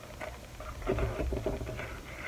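Plastic-packaged sticker sheets handled and set down on a tabletop: light irregular rustling and crinkling of the packaging, with soft taps and knocks, busiest about a second in.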